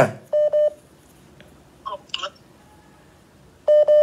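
Telephone-line beeps: a short double beep near the start and one more beep near the end, about three seconds later, with a faint brief sound in between.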